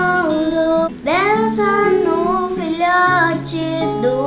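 A young girl singing long, held notes to an acoustic guitar accompaniment, with a short break in her voice about a second in.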